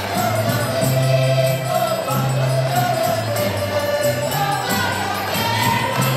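Portuguese folk music played live: accordions and guitars over a steady, stepping bass line, voices singing together, and a regular jingling percussion beat.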